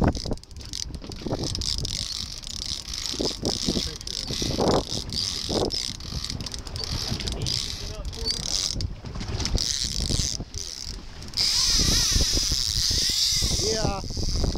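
A fishing reel's ratchet clicker clicking steadily as line pays out, over boat and wind rumble. It gets clearly louder for the last two or three seconds.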